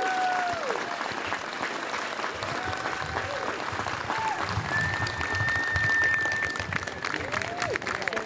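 Audience applauding after a talk ends, a dense, steady clatter of many hands clapping, with a few voices calling out over it and one longer held call in the middle.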